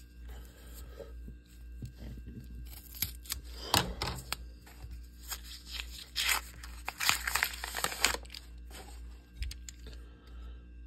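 Paper wrapper of a half-dollar coin roll being torn open and crinkled by hand, in several bursts, the longest about six seconds in.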